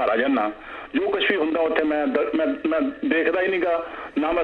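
Only speech: a man talking over a telephone line, the sound thin and cut off at the top, with short pauses between phrases.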